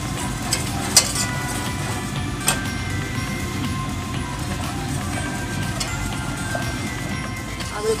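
A wire whisk stirring flour into melted butter in a stainless steel saucepan, with a few sharp clinks against the pot, the loudest about a second in. A steady low background noise runs underneath.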